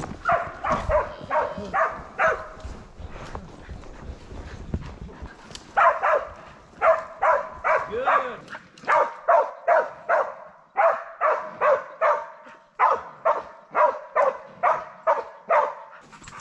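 Cattle dogs barking repeatedly as they work and hold cattle: a quick run of barks at first, then after a short pause a steady string of about two barks a second.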